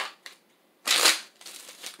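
A tarot deck being shuffled by hand. There is a sharp click at the start, then one loud rustle of cards about a second in, then a few lighter flicks.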